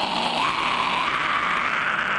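A man's extreme-metal fry scream: one long, harsh, rasping scream with no clear pitch, of the high, shrieking kind typical of black metal vocals.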